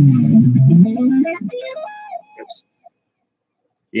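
Stratocaster-style electric guitar played through an amp: low notes whose pitch dips and comes back up, then a few higher held notes that fade out about two and a half seconds in.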